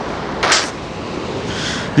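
Steady rush of surf breaking on a pebble beach, with a short louder hiss about half a second in.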